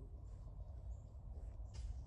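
Quiet outdoor background: a concrete truck's low, steady rumble, with a few faint bird chirps.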